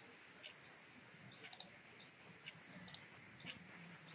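Near silence with faint hiss and a handful of faint, irregular clicks, the sharpest about one and a half seconds in.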